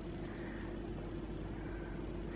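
Steady low background hum with a faint steady tone and a low rumble, and no distinct sound events.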